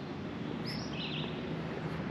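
Steady outdoor background noise with a bird chirping a couple of times, short high calls, about a second in.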